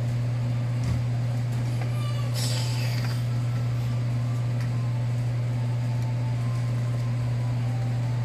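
A steady low hum of constant pitch, with a faint click about a second in.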